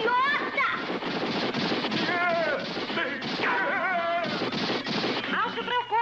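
Cartoon soundtrack: wordless yelling voices over a dense, rapid run of sharp bangs.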